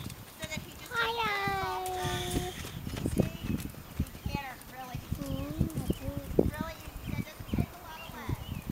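Hoofbeats of a grey horse moving over a dusty arena surface, a run of dull thuds at roughly three a second, with people talking over them.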